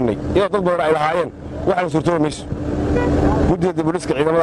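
A man speaking, with a steady low hum like an engine running underneath that is heard most clearly in a pause of about a second, a little past the middle.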